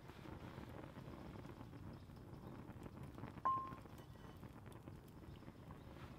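Wood fire crackling with small pops, and about halfway through a cast iron skillet set down on the iron pot stand with a single metallic clank and a brief ringing tone.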